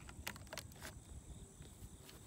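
Quiet outdoor background with a few light clicks, mostly in the first second.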